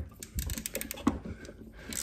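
A 3/8-inch-drive ratchet clicking in a quick, uneven run as the oil drain plug is backed out of the mower engine's crankcase.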